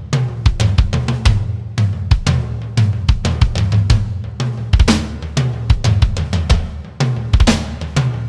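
Rock drum kit playing a song intro in a post-grunge style: bass drum, snare and cymbal hits in a busy, steady rhythm over a low, sustained bass.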